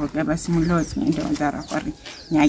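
A woman talking steadily, with short pauses between phrases.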